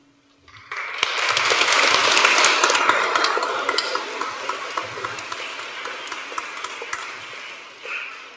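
Congregation applauding: many hands clapping start abruptly about a second in, peak soon after, then slowly die away.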